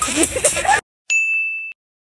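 Background music cuts off abruptly just under a second in. A moment later comes a single bell-like ding, a sharp-onset steady tone that fades over about half a second and stops short: an edited-in sound effect.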